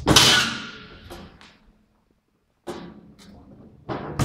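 A loud knock or thump that dies away over about half a second, followed by a stretch of silence. After the silence come softer irregular tapping and handling noises.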